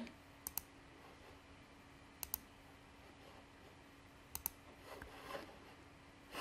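Faint clicks of a computer mouse button: three short pairs of clicks, about two seconds apart.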